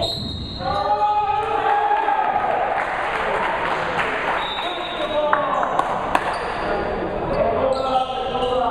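Indoor basketball game in a reverberant gym: voices calling out over the play and a basketball bouncing on the hardwood floor, with a couple of sharp knocks about six seconds in.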